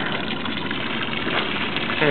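A boat engine idling steadily, with an even hiss of water and air around it.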